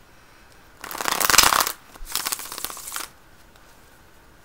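A tarot deck being shuffled in two quick bursts of rapid card-flicking, the first louder, about a second in and again about two seconds in.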